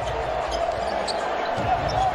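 Basketball being dribbled on a hardwood court, under a steady hum of arena crowd noise.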